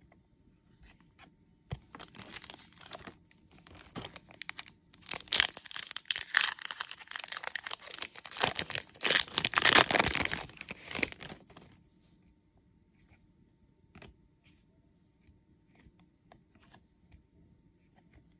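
A foil trading-card pack wrapper being torn open and crinkled. The crackling starts about two seconds in, is loudest for the next several seconds and stops abruptly near the middle, leaving only faint scattered clicks.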